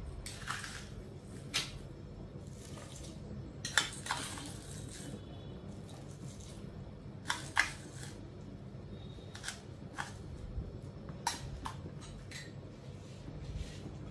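A steel spoon clinking and scraping against a small stainless-steel bowl while an ingredient is spooned into the cooking pot: about a dozen short, light clinks scattered every second or so.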